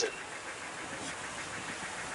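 Steady, even street background noise with no distinct event: a low hum of the surroundings, like distant traffic.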